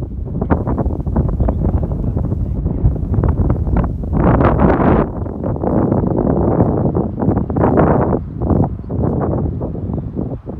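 Wind buffeting a phone microphone outdoors: a loud, gusting rumble that rises and falls throughout.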